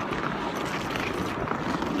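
Steady outdoor city street ambience: a constant background rush with a few faint scattered sounds.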